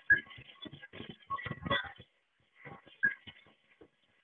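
Tri Tool 608SB clamshell lathe severing and bevelling 8-inch thin-wall tube: irregular clicking and scraping of the cutting tools in the wall, with a couple of brief high squeaks. It thins out near the end.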